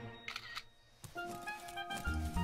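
Film score for an animated short: the music fades away, a brief high sound effect rings out, and after a short pause a click leads into new music of light, short repeated notes.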